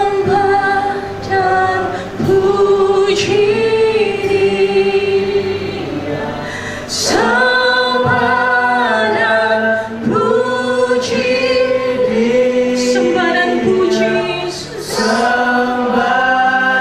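Mixed group of male and female singers singing a Christian worship song in harmony through microphones, with long held chords; a new phrase swells in about seven seconds in.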